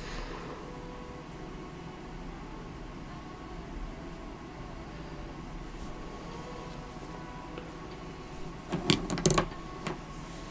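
Faint steady hum and room noise while a pen inks on paper, then a short cluster of sharp clicks and knocks about nine seconds in as the pen and desk are handled.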